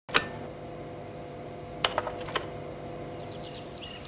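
A steady hum with a sharp click just after the start and a quick cluster of clicks about two seconds in. Near the end, a bird chirps several times in short, high, falling notes.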